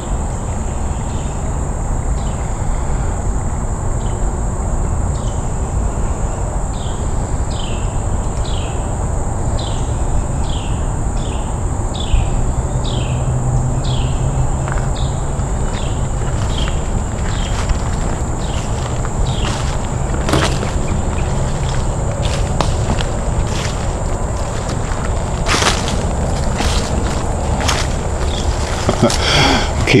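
Woodland insect chorus: a steady high-pitched drone, with a short falling chirp repeating a little more than once a second. A few sharp clicks come in the second half.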